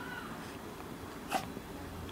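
Chihuahua sneezing once, a short sharp snort about a second and a half in, after a faint brief whine at the start.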